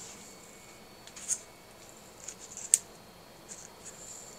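A few faint, sharp clicks and rustles of hands handling a small object at a table, the loudest about three-quarters of the way through.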